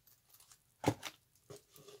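Soft rustling and handling noises as items are pulled out of a leather handbag, with one sharper knock about a second in.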